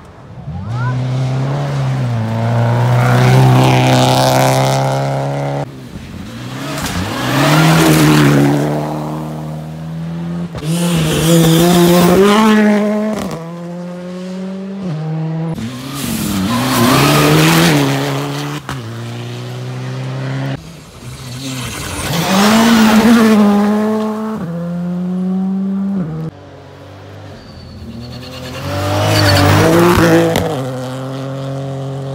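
Rally cars passing one after another on a gravel stage. Each engine revs hard, its pitch climbing and then dropping at each gear change, swelling to a peak as the car goes by and fading away, about six times in turn.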